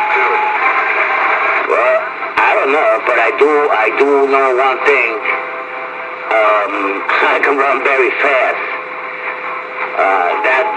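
Voices coming through a two-way radio over a steady static hiss, the speech thin and band-limited like a radio transmission. A steady whistle stops just after the start; speech comes through about two seconds in and again from about six and a half seconds in.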